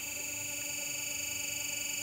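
Steering-stem press machine running while it presses a motorcycle steering stem: a steady electric buzz with a fast, even pulse and a thin high whine above it.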